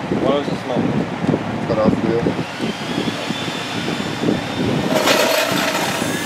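A cordless drill runs briefly near the end, a steady motor whine lasting about a second and a half, as a freshly chucked bit is spun.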